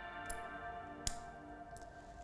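A single sharp click about a second in, with a couple of fainter ticks around it: the metal transfer-tube connector snapping onto the interstitial needle's end, the click that shows the connection is secure. Soft background music underneath.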